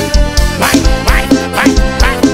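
Live band music with a steady dance beat: a drum kit's kick about twice a second, with percussion and pitched instruments over it.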